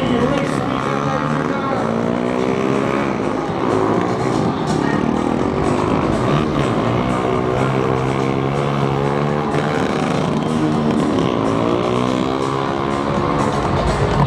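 Motorcycle engines revving hard as the stunt bikes accelerate on the track, the pitch climbing in repeated sweeps: once early on, again about halfway and again near the end.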